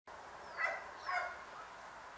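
Two short animal calls about half a second apart.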